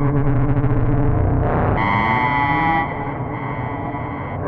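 Synthesizer drone with distortion and effects over a deep bass bed. About two seconds in, a bright, bell-like layer and a slow rising sweep enter for about a second; then the sound thins and drops a little in level.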